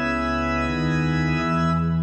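Church organ playing sustained, held chords, with the bass note stepping to a new pitch twice.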